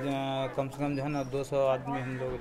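A man speaking in Hindi, voice only, with no other distinct sound.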